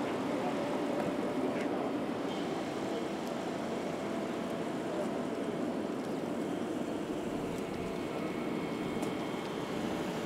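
A car pulling away slowly across paving: a low, steady running and tyre noise that eases off a little as it moves off.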